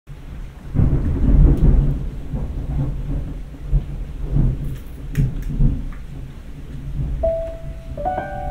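Low rumble of thunder with rain, swelling and fading unevenly. A single held piano note comes in near the end.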